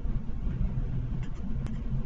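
Steady low background rumble with no speech, and a faint click about a second and a half in.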